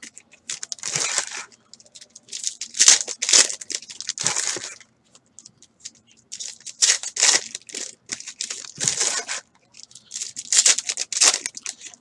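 Foil trading-card pack wrappers being torn open and crinkled by hand, in irregular bursts of crinkling with a few short pauses.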